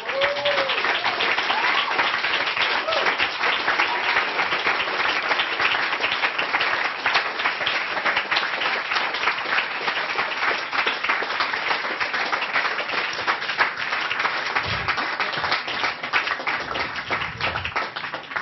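Audience applauding, breaking out all at once and holding steady as a dense, even clapping.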